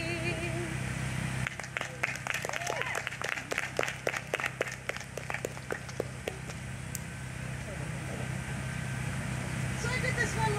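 The last held note of an unaccompanied sung song fades out, then a small audience claps for about five seconds, the claps thinning out and stopping, over a steady low hum.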